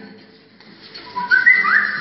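Whistling, starting about a second in: a low note, then higher notes with a quick upward slide, ending on a held note.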